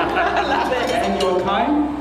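People talking: speech the recogniser did not transcribe.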